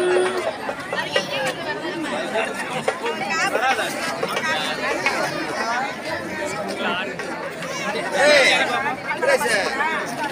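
Dense crowd chattering, many voices talking over one another at once.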